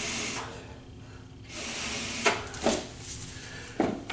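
Rescue breaths blown through a CPR pocket mask into a training manikin, heard as breathy hiss: the tail of one breath at the start, then a second breath of under a second about a second and a half in. A few short knocks follow near the end.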